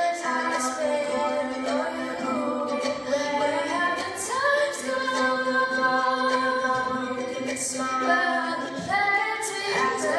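Two female voices singing a pop song together to a lightly strummed ukulele, with long held notes through the middle.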